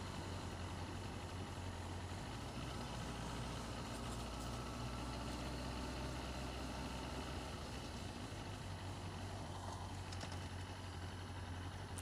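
Sport motorcycle engine running steadily at low town speed, a constant low hum under wind and road noise on the microphone.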